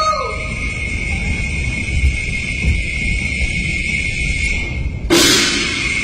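Cantonese opera percussion: a sudden loud cymbal-and-gong crash about five seconds in, ringing on afterwards. Before it there is only a steady hiss and a low rumble.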